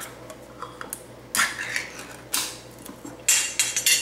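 Three short metallic clatters and scrapes of kitchenware being handled, about a second apart, the last one the longest and loudest.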